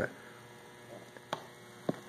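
Faint steady electrical hum, broken by two sharp clicks about half a second apart near the end, as the push button on a Pelican remote area lighting box is worked to switch its LED light to flash mode.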